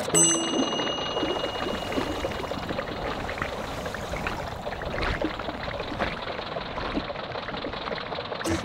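A bright chime rings once right at the start, then a steady underwater bubbling-water sound effect runs on.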